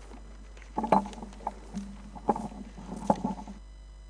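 Bumps and rustling on a live microphone, with three louder knocks, then the background noise cuts off suddenly, leaving a steady electrical hum.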